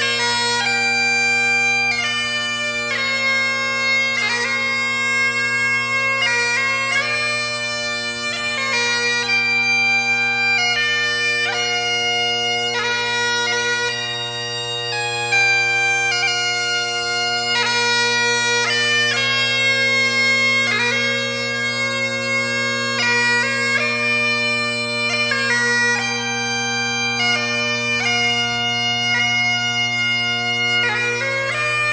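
McCallum AB3 Great Highland bagpipes with a McCallum Gandy chanter, Shepherd chanter reed and Ezee drone reeds, playing a tune: steady drones under a chanter melody that changes note several times a second. The chanter reed is brand new and not yet broken in.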